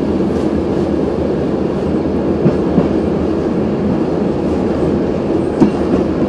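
A VR Dm7 'Lättähattu' diesel railbus running along the track, heard from inside the cab: a steady low engine and running noise with a few short clicks from the wheels, the sharpest near the end.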